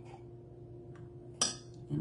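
A metal spoon scraping hardened coconut cream out of a can, with faint scrapes and ticks and then one sharp metallic clink about one and a half seconds in. A faint steady hum runs underneath.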